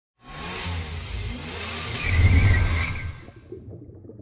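Logo-intro sound effect of a car engine revving with a whoosh sweeping past. It swells to its loudest about two seconds in, then fades out before the end.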